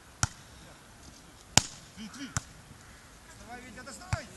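Volleyball being struck by players' hands and forearms during a beach volleyball rally: three sharp slaps, the second the loudest.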